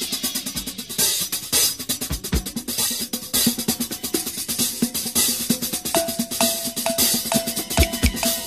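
A rock drum kit played fast in a drum break: rapid snare and tom strokes with bass drum and hi-hat. From about six seconds in, a short, high, ringing knock repeats a little over twice a second over the drums.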